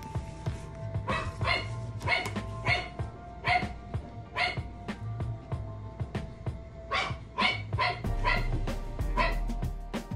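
A dog barking repeatedly over background music: about six short barks, a pause of a couple of seconds, then five more.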